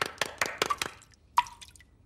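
Cartoon water drop from a bath tap: one sharp plink with a short ring about two-thirds of the way through, after a run of quick knocks that fade out. The drip means the freshly mended tap is dripping again.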